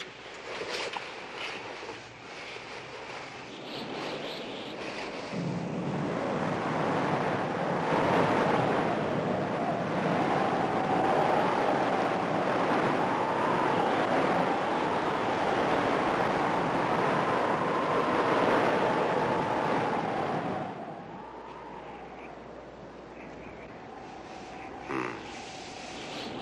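Howling wind sound effect, building up over the first few seconds, with a high, wavering moan that rises and falls above it. About twenty seconds in the wind drops away suddenly, leaving the faint moan.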